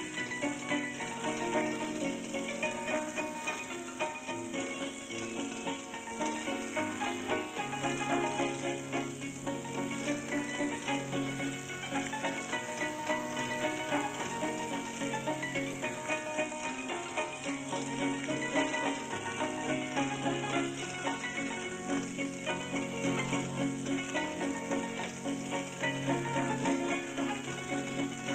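Street barrel organ playing a popular tune from an old 78 rpm record, with steady held notes over a changing bass.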